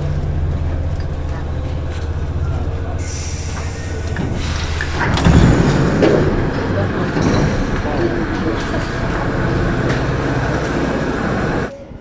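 Paris Métro line 13 train heard from inside the car: a steady low running hum as it pulls into the station. The loudest moment is a burst of noise about five seconds in as the doors open, followed by platform noise and passengers' voices.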